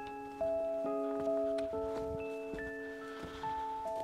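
Background music: a slow melody of struck, ringing bell-like notes, about two new notes a second, each left to ring over the next.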